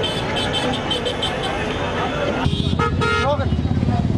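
Busy street at night: crowd chatter over motor traffic, with vehicle horns tooting repeatedly in the first second or so and a longer horn tone about three seconds in.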